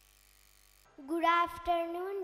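A brief near-silence, then about a second in a child's voice starts speaking over a microphone and PA, drawn out and sing-song, with a couple of low pops.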